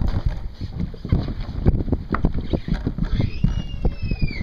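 Wind buffeting the microphone on a boat at sea, with uneven rumble and water noise. Near the end, a short high whistle-like tone rises and then falls.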